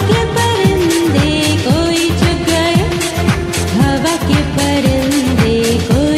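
Urdu Sunday school song: a sung melody over a backing track with a steady drum beat.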